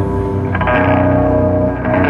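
Black/doom metal band playing live: distorted electric guitars hold heavy sustained chords, and a new chord is struck about half a second in.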